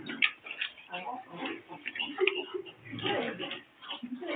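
Indistinct speech: a voice talking, too unclear for the recogniser to pick out words.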